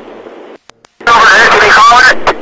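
Police radio: faint static hiss that cuts off with a click as a transmission ends, then a man's voice, laughing and starting to speak, comes in loud over the radio about a second in.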